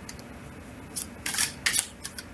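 Tarot cards being handled and shuffled: several short, crisp card rustles and snaps in the second half, after a second of quiet room tone.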